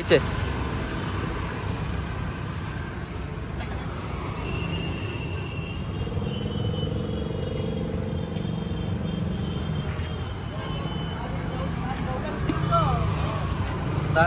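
Busy street ambience: a steady rumble of road traffic with people talking in the background.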